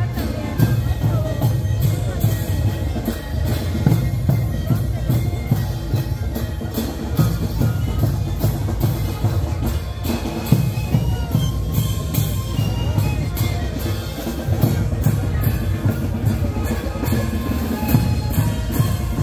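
A Kantus band playing: massed panpipes (sikus) sounding held tones over a steady beat of large bombo drums.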